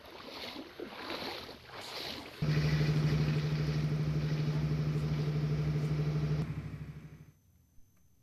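A wavering rushing noise, then a loud, steady low engine drone that cuts in about two seconds in, holds for about four seconds and fades away.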